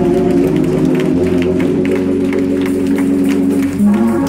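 Organ music in sustained, held chords, with people clapping along in a steady rhythm.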